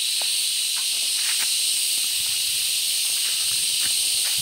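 A steady, high-pitched drone of cicadas in the surrounding vegetation, loud and unbroken. Under it come faint scattered crunches and ticks of footsteps on dry leaves and twigs.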